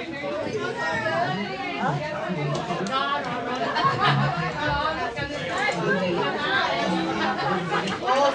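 Several people talking at once in overlapping, indistinct chatter.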